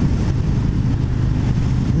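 2020 Harley-Davidson Road King Special's Milwaukee-Eight 114 V-twin running steadily at highway cruising speed, about 3,000 rpm, with wind noise on the microphone.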